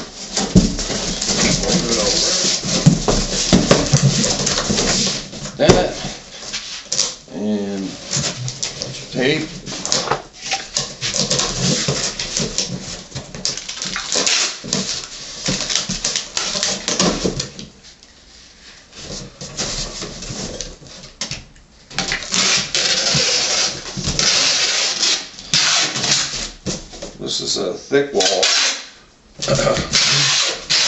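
Packing tape screeching as it is pulled off a handheld tape gun along the seams of a cardboard box, in long runs of several seconds with short pauses between them, among knocks and rustles of the cardboard flaps.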